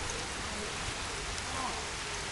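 Steady, even hiss of light rain falling outdoors.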